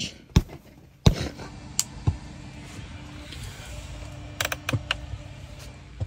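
Handling noise: scattered sharp clicks and knocks as hands bump the bunk cot's fabric and frame, a cluster of them near the end. A low steady hum runs underneath from about a second in.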